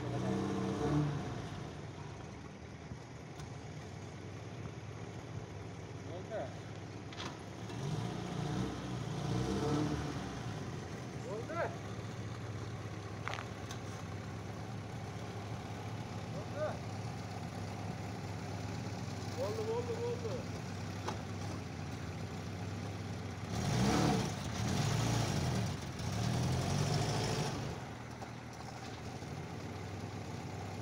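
Old Moskvich sedan's engine running under load while carrying long steel bars on its roof, revving up twice: around eight to ten seconds in and again from about 24 to 27 seconds in.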